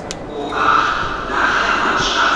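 Underground train standing at a station platform with its doors open, giving a steady hissing hum. A single click comes right at the start.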